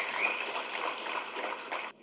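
Audience applause, with a high whistle held over its start; it cuts off abruptly near the end.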